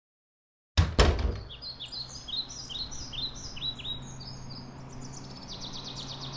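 Silence, then two heavy thumps about a second in, followed by small birds chirping in a quick series of short falling notes, which turn into a faster, higher trill near the end, over a steady low hum.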